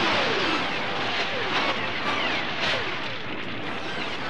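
Cartoon battle sound effects: a steady, rushing blast noise with several falling whistling tones laid over it, one after another.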